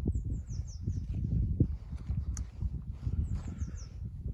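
A small songbird singing two short runs of high, quickly falling notes, about a second apart at the start and again near the end, over a gusty low rumble. A single sharp click sounds about midway.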